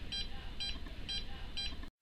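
Ghost Meter EMF meter beeping in a steady run of short, high beeps, about two a second, and cutting off abruptly near the end. It is the meter's alert for a detected electromagnetic field, which the investigator takes as a sign of a spirit nearby.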